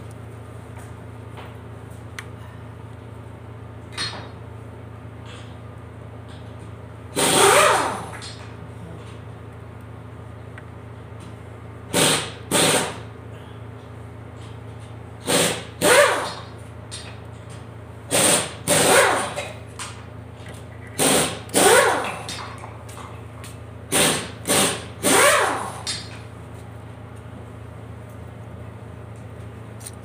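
A 2012 Hyundai minivan engine idling with a steady low hum. Over it come about a dozen short bursts of rushing air, often in pairs, as the throttle is blipped and air is drawn through the uncovered throttle body.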